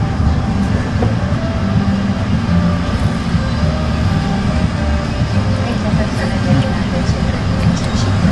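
Steady low rumble of street traffic and outdoor background noise, with faint voices talking in the background.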